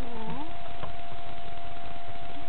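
Wolf puppy whining: short, wavering, pitched whimpers in the first half second, then a single click a little under a second in, over a steady tone and hiss.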